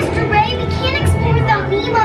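Children's voices over music, with a steady low hum underneath.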